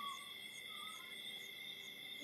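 A steady chorus of insects calling: several continuous high tones with a regular pulsing chirp on top. Two brief faint whistled notes sound over it near the start and just under a second in.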